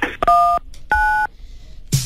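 Two telephone keypad DTMF tones, key 1 then key 9, each a short steady beep of two tones about a third of a second long and about half a second apart. They select a menu option on an automated phone line.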